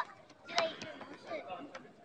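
Overlapping voices and chatter, with one loud, sharp shout about half a second in and a few light knocks.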